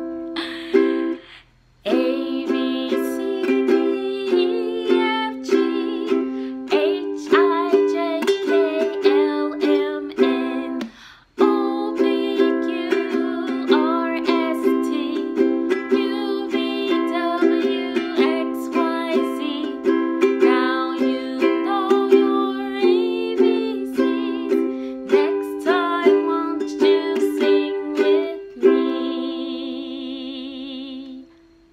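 Makala ukulele strummed in chords at a steady rhythm, with a woman singing along over it. The playing breaks off briefly near the start and again around eleven seconds in, and ends on a held, ringing chord.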